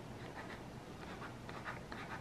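Ballpoint pen writing on a sheet of paper on a countertop: a few short, faint scratching strokes over a low steady hum.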